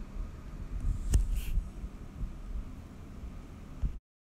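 Steady low rumbling background noise with a single sharp knock about a second in.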